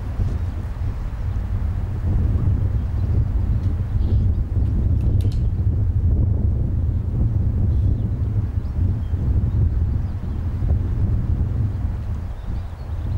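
Wind buffeting the microphone: a steady, loud low rumble.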